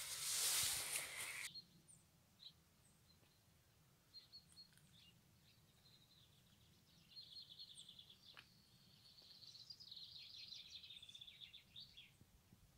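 A second and a half of loud rustling noise, then faint birdsong: scattered high chirps and two runs of rapid trilled notes, the second longer and near the end.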